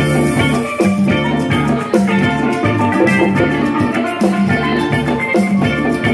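Live instrumental band: a steel pan playing a melody of struck, ringing notes over electric guitar and a drum kit keeping a steady beat.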